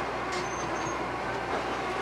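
Nursery potting machine and its conveyor running: a steady mechanical clatter with a short high squeal about half a second in.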